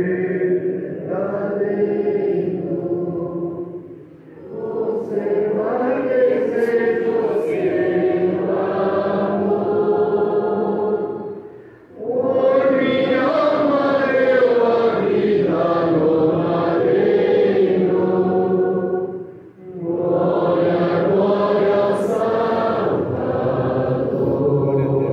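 A congregation singing a hymn in long held phrases, with short pauses for breath about four, twelve and nineteen seconds in.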